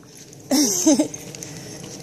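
A short vocal sound about half a second in, falling in pitch, followed by quiet footsteps along a dirt trail.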